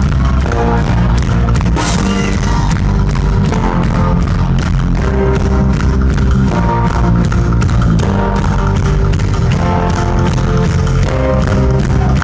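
Live rock band playing loud with a steady drum beat, bass and electric guitar, without lead vocals.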